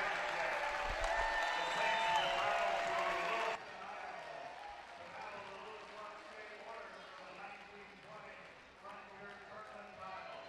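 Crowd in a gymnasium chattering and calling out, with some clapping, between quarters of a basketball game. About three and a half seconds in the sound drops abruptly to a fainter murmur.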